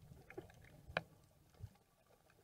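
Muffled underwater ambience from a camera held below the surface, with scattered small clicks, one sharper click about a second in and a low thump near the end.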